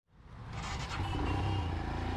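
Royal Enfield Himalayan BS6's 411 cc single-cylinder engine idling with a steady low rumble, fading in from silence.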